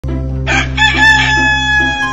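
A rooster crowing once, one long call starting about half a second in, over background music.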